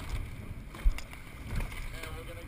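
Rowing shell under way, water rushing along the hull, with one sharp low thump about a second in, the once-per-stroke knock of the crew's rowing cycle.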